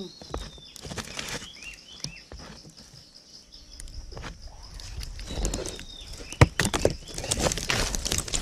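Rustling and scraping in dry leaf litter with many small knocks and clicks as someone moves about in it, one sharp click the loudest about six and a half seconds in. Several short, high, downward chirps come in the first two seconds.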